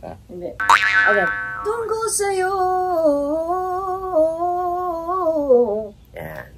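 A woman singing one long, sustained vocal run on a single vowel, the pitch wavering up and down in small steps and dropping off at the end. It is a melismatic run of the kind being taught. A short laugh and a quick falling vocal slide come just before it.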